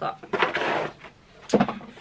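Handling sounds as a paper insert card is moved: a short papery rustle, then a single knock about one and a half seconds in.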